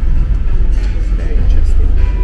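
Background music with a steady deep bass, with quiet talk over it.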